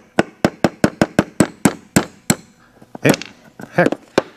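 Rapid, evenly spaced taps of a nylon-faced hammer on a steel pin punch, about five a second, driving out a pin that has just broken loose in a rusted Winchester 1873 set trigger assembly. The tapping stops a little over two seconds in.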